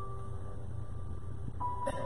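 Pipe organ playing slow, held notes, with a new note coming in about one and a half seconds in and a short click just before the end.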